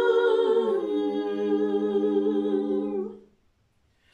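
Female barbershop quartet holding a close-harmony chord a cappella, sung so softly that it sounds hummed. The lowest voice steps down about half a second in. The chord ends a little after three seconds.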